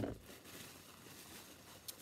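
Faint background noise with one short click near the end.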